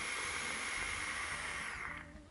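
Steady hiss of a long puff on a box-mod e-cigarette with a rebuildable tank: air drawn through the atomizer's airflow as the e-liquid is vaped, fading near the end.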